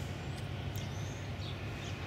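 Quiet outdoor background: a steady low hum with a few faint, short, high chirps over it.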